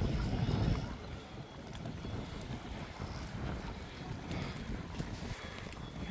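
Wind buffeting the microphone: a low, uneven rush, louder in the first second, then steady.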